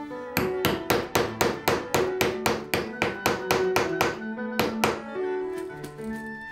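Quick, even hammer blows on a metal snap-fastener setting tool, about four to five strikes a second for some four and a half seconds, setting a snap fastener into the bag's fabric. They stop about five seconds in, with instrumental background music underneath throughout.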